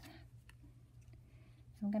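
Faint handling of small cardstock pieces on a tabletop, with a single light click about half a second in and a few fainter ticks after it. A woman starts speaking near the end.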